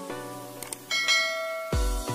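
Notification-bell sound effect: a bright ding about a second in, ringing out over background music. Near the end, an electronic dance beat with heavy bass kicks comes in.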